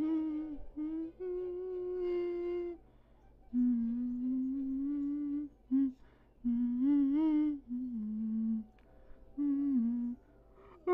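A person humming a string of held, mostly level notes, some short and some a second or two long, with brief pauses between them.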